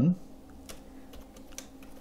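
Keys on a computer keyboard being typed: a few faint, separate clicks.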